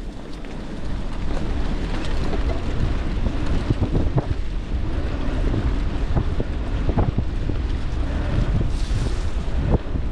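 Wind buffeting an action camera's microphone as a gravel bike rolls along a dirt forest trail, with a steady rumble of tyre and wind noise, growing louder about a second in. Scattered short knocks and rattles come from the bike going over bumps.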